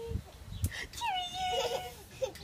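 A toddler's high-pitched wordless squeal, starting about a second in and sliding slightly down in pitch over about a second.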